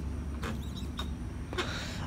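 A man draws on a cigarette and breathes out, a faint breathy hiss near the end, over a steady low background rumble.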